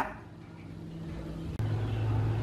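A low steady motor hum, engine-like, grows gradually louder. About one and a half seconds in, a faint click comes and the hum drops to a lower, stronger pitch.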